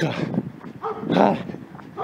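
A dog barking, a short bark about a second in.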